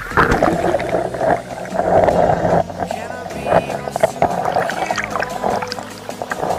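Background music over water churning and splashing against a waterproof camera held at the water's surface. The splashing comes in sharply at the start and goes on in uneven gushes.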